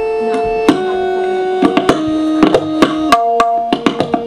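Tabla being played, the opening strokes of a teentaal solo's peshkar: a few widely spaced strokes, then quicker ones from about a second and a half in, the right-hand drum ringing after each. Under them a steady melodic accompaniment moves in long held notes.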